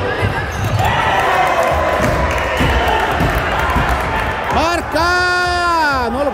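A futsal ball knocking and bouncing on a wooden gym floor amid crowd noise, then a single long, held shout near the end as a goal goes in.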